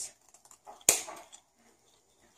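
Scissors cutting through the cardboard striker strip of a matchbox: one sharp snip about a second in, with a few fainter clicks and rustles around it.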